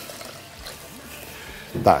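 Water poured from a glass jug into a stainless steel pot of rice, a soft, steady pour.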